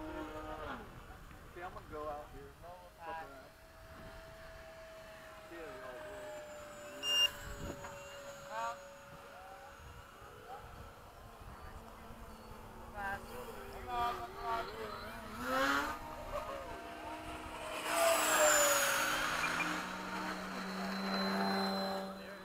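Electric ducted fan of a Freewing 80mm MiG-21 model jet whining in flight. It grows loudest for a pass about three quarters of the way through, where the pitch falls as the jet goes by.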